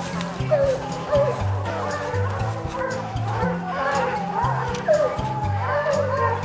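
Hounds barking and howling at the foot of a tree where they have treed a bear, a few short wavering calls, heard over background music with sustained low notes.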